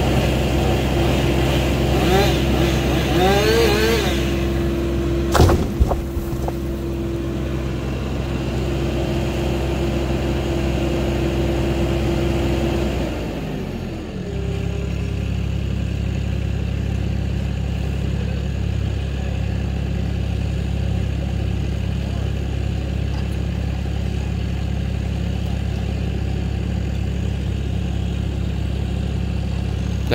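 Vermeer mini skid steer engine running steadily at raised revs, then throttled down to a lower, steady idle about 13 seconds in. A sharp knock sounds about five seconds in.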